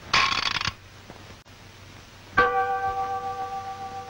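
Cartoon sound effects: a brief, raspy rattle, then about two and a half seconds in a sharp metallic clang that rings on like a struck bell for a couple of seconds as it fades.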